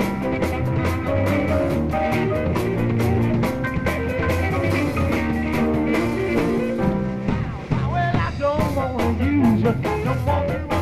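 Live early-1970s rock band playing an instrumental passage: drum kit, bass and held notes from the other instruments. In the last two seconds or so a lead line wavers and bends in pitch.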